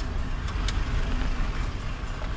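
Car engine and road noise heard from inside the cabin while driving slowly through a right turn: a steady low rumble, with a couple of light clicks about half a second in.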